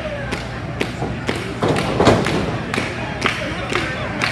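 Even beat of sharp thuds, about two a second, at a pro wrestling ringside, with voices calling over it and one heavier thud about two seconds in.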